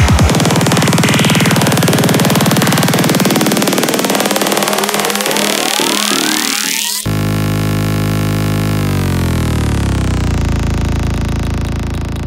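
Progressive psytrance breakdown: the kick drum drops out just after the start, leaving a dense synth build with rising sweeps. About seven seconds in it cuts abruptly to a sustained low synth drone whose pitch glides down, then fades out near the end.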